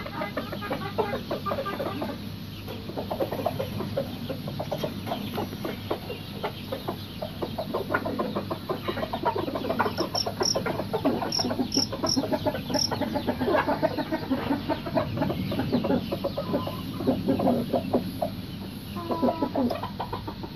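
Chickens clucking in the background. About ten seconds in come a few short high chirps, likely from a male field cricket in the tub.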